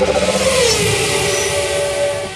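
Car engine sound effect: the engine note falls in pitch over about the first second, under a steady, loud rushing hiss like tyres spinning in dust.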